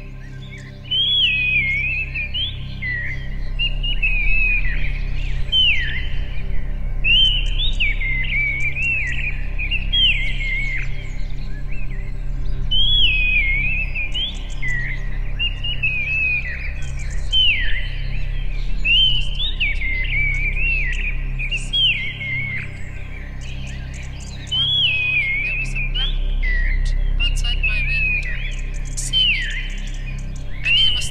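Synthetic blackbird-like song made from human speech reduced to a single harmonic. It starts about a second in as short whistled phrases that slide up and down in pitch, one after another every second or two, over a low steady hum.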